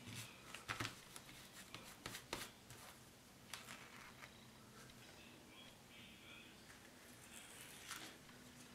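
Faint rustling and scratching of fingers rubbing and peeling soaked transfer paper off a cotton t-shirt, with a few light clicks in the first half.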